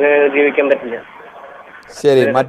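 Speech heard over a telephone line, cut off above the voice band. It stops about a second in, leaving faint line hiss.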